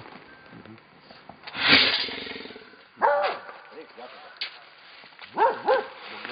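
Brown bear caught in a metal cage trap, growling and roaring in short loud bursts: the loudest about two seconds in, then shorter calls around three seconds and twice near the end.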